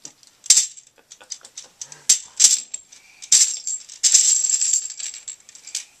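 Plastic Connect Four discs clattering: a few sharp separate clicks, then a dense clatter over the last couple of seconds as the discs are released from the bottom of the grid and spill into the tray.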